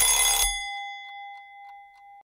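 Countdown-timer alarm sound effect going off as the timer hits zero: a loud bell-like ring for the first half second, then one ringing tone fading away over the next second and a half.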